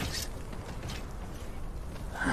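Low, steady rumbling ambience of a sound-designed battlefield, with a short hiss at the very start and a fainter one about a second in.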